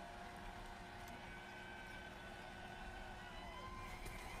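Faint background sound: distant voices over a low, steady hum, with no clear impact.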